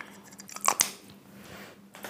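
A short burst of clicks and rustling from small makeup items being handled as the makeup sponge is picked up, about two-thirds of a second in.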